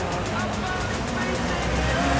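Low rumble of street traffic that swells toward the end, with indistinct voices over it.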